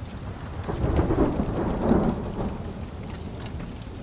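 Steady rain with a roll of thunder that swells about a second in and dies away by about two and a half seconds.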